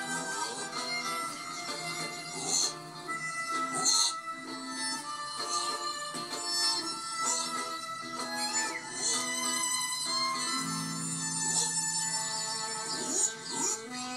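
Background music from a TV drama's soundtrack: a melodic instrumental score moving from note to note throughout, played through the television's speaker and picked up in the room.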